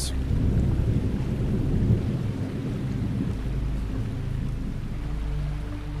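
A deep, thunder-like rumble over a quiet background music bed. The rumble is strongest in the first couple of seconds and eases off, leaving steady low notes of the music toward the end.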